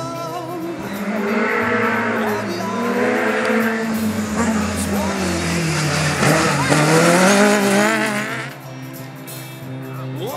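Rally car engines revving hard, pitch repeatedly climbing and dropping as the cars change gear and pass close by, with tyre and road noise, from about a second in until near the end. Background pop music with singing is heard at the start and end.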